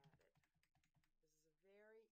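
Faint typing on a computer keyboard, a quick run of keystrokes, followed by a voice in the second half.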